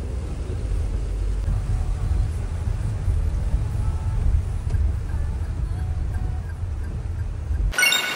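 Steady low rumble of a Toyota car driving on a rain-wet road, heard from inside the cabin. It cuts off suddenly just before the end.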